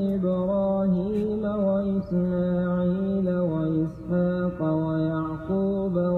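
Quran recitation in melodic tajweed style: a single voice chanting long, drawn-out held notes that step up and down in pitch, with brief breaths between phrases.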